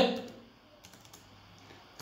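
A few faint computer-keyboard keystrokes, typing a number into a spreadsheet cell and confirming it.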